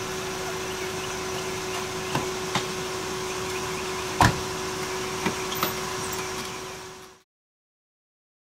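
A car door being worked: a few sharp clicks of the handle and latch and one louder knock about four seconds in, over a steady hum. The sound fades out to silence near the end.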